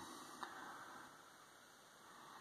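Near silence: room tone with a faint hiss and one small tick about half a second in.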